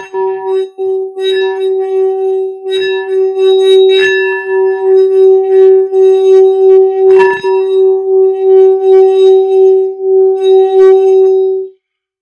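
Metal singing bowl played with a wooden mallet: struck a few times and circled around the rim, it sings one steady tone that pulses evenly in loudness. The tone cuts off suddenly near the end.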